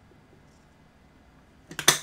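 A man drinking from a bottle close to the microphone: little is heard for most of the time, then a short, loud burst of clicky noise near the end as he finishes the drink.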